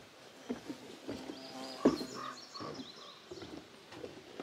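Footsteps on an old wooden porch, the boards creaking under them, with one louder knock about two seconds in.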